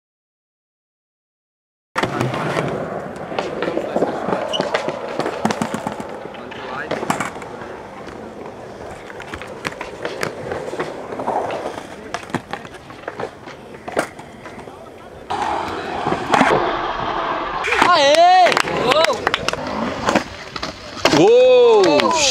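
Silent for the first two seconds, then skateboard wheels rolling on concrete with the sharp clacks of boards hitting the ground. Voices join in, and near the end there are two drawn-out shouts that rise and fall in pitch.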